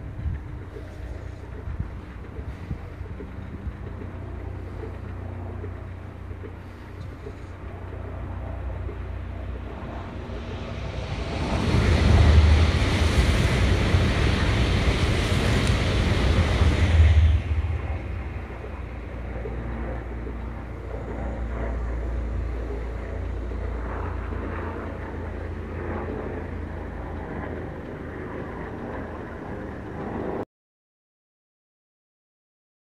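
A Tokaido Shinkansen bullet train passing at speed: a rush of noise that builds about ten seconds in, is loudest for about five seconds and fades away by about eighteen seconds. Wind buffets the microphone with a low rumble throughout.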